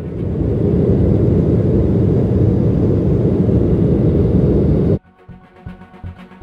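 Jet airliner taking off, heard from inside the cabin: a loud, steady low rumble of engines and runway that builds over the first second and cuts off suddenly about five seconds in.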